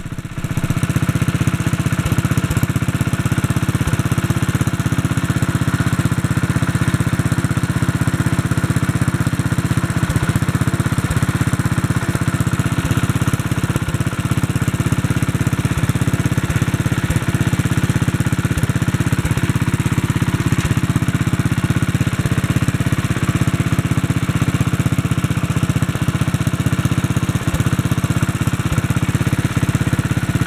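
Kohler K91 single-cylinder four-horsepower engine on a 1957 Wheel Horse RJ-35 running steadily, driving the belt and variable speed pulley.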